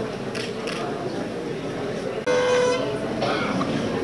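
Background murmur of a crowd of people, broken a little over two seconds in by a short, steady horn-like toot, the loudest sound, with a fainter tone just after it.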